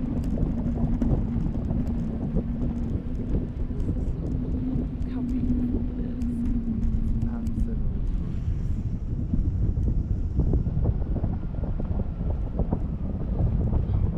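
Wind buffeting the microphone of a camera on a parasail tow bar in flight: a dense, steady rumble. A steady low hum runs under it for the first seven seconds or so, then stops.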